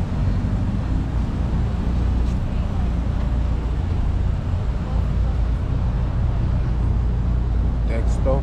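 Street ambience: a steady low rumble of road traffic, with faint voices of people nearby.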